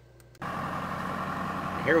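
Tractor engine running steadily, driving a mechanical grape shoot positioner along a vineyard row. It cuts in suddenly about half a second in, after near silence.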